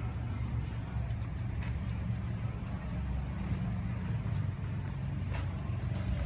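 Outdoor street ambience: a steady low rumble, with a faint click about five seconds in.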